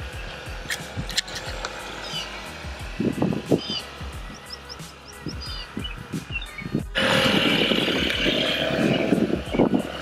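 Background music with a steady beat, which turns suddenly louder and fuller about seven seconds in.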